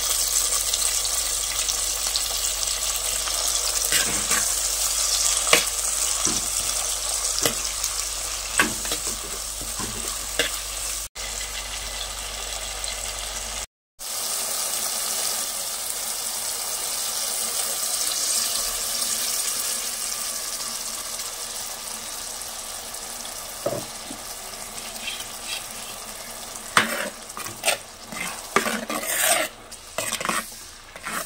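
Tomatoes and green chillies sizzling in oil in a clay pot, with a metal spoon clicking and scraping against the pot as they are stirred. The sizzle fades in the second half, and near the end the spoon scrapes and knocks repeatedly while thick ground paste is stirred in.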